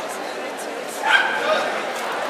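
A small dog barking while running an agility course: one short, high bark about halfway through, then a weaker one just after, over the steady chatter of a crowd in a large hall.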